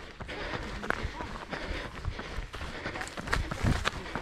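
A runner's footfalls on a worn tarmac lane, a steady string of short impacts at running pace.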